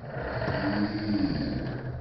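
Small electric motor of a toy bumper car whirring as it drives and rolls across a hardwood floor.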